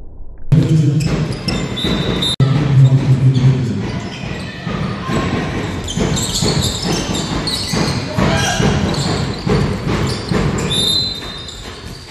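Handball game sounds in a sports hall: the ball bouncing, shoes squeaking on the court floor, and players' voices, all with the echo of a large hall.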